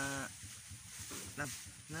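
A man's drawn-out, sing-song voice cooing to his dogs, ending just after the start, then a brief high-pitched vocal sound about one and a half seconds in.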